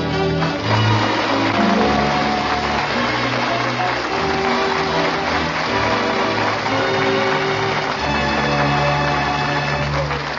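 Radio-show orchestra playing a musical bridge between scenes: held chords that change every second or so.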